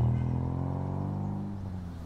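A car engine running with a low, even hum that fades away over the two seconds, as a vehicle moving off or passing along a busy road.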